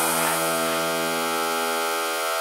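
Techno breakdown: a sustained synthesizer chord held steady, with no kick drum or percussion.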